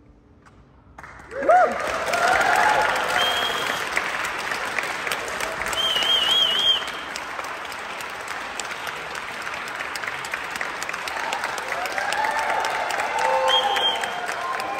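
About a second of hush after the music ends, then audience applause breaks out suddenly and carries on, with cheering voices and a high warbling whistle over the clapping.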